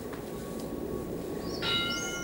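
Interval timer's bell-like chime: several ringing tones start together about a second and a half in and ring on. It is the signal that the work interval is over.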